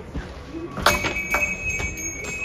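Glass shop door pulled open by its chrome handle, with a sharp clack about a second in, setting off a door chime that rings on in steady high tones.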